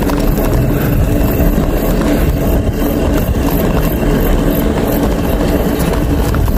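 Steady rumble of bicycle tyres rolling on a concrete path, mixed with wind buffeting the microphone while riding.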